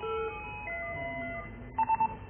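Video intercom indoor monitor playing electronic tones: a chime of held notes that change pitch, then three short loud beeps near the end as its touch key is pressed.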